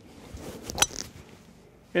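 A golf driver swung through and striking a teed ball: a faint rush of air builds, then one sharp, metallic crack at impact a little under a second in.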